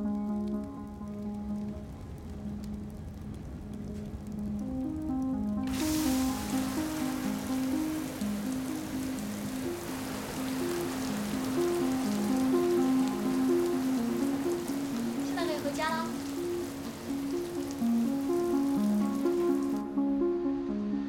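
Music of softly repeated notes, joined about six seconds in by a sudden steady hiss of water spraying down like heavy rain. The spray looks to be ceiling fire sprinklers set off by flames, and it cuts off just before the end.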